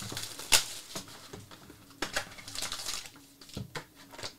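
Clear plastic wrapping torn and peeled off a Panini Obsidian football card box, crinkling and snapping in a few sharp crackles, the loudest about half a second in and more between two and three seconds in.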